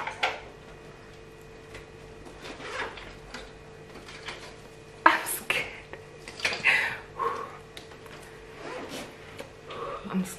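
Hands working at the tight-fitting lid of a cardboard iPhone box: scattered rubs, taps and small knocks, the sharpest one about five seconds in.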